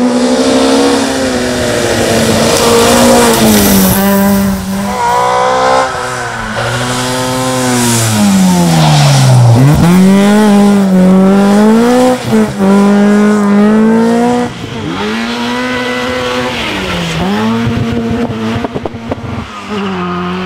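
Ford Escort Mk II rally car engines revving hard on a stage, the pitch climbing and dropping again and again with throttle lifts and gear changes. About nine and a half seconds in, the revs fall steeply and then climb back up.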